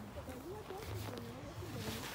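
Faint voices talking in the background, over an on-and-off low hum.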